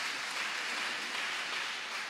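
Audience applauding, steady and fairly quiet.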